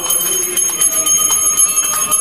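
Temple bells rung rapidly for an aarti: many quick strikes over a steady, high ringing, with voices singing the aarti faintly beneath.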